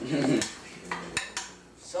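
A metal cooking utensil clinking against a frying pan of eggs on the stove, a few sharp clinks about a second in.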